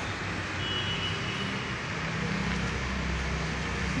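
Road traffic noise: a steady hum of passing vehicles, with a low rumble swelling in the middle and fading again.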